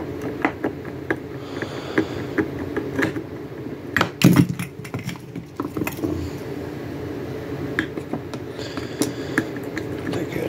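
Scattered clicks and knocks of a screwdriver working at the terminals of a variac in a wooden case, with one louder knock about four seconds in, over a steady low hum.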